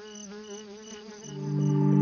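Insect sound effects for a cartoon bee: a steady, slightly wavering buzz with short high chirps about three times a second. A low music chord swells in from a little past halfway.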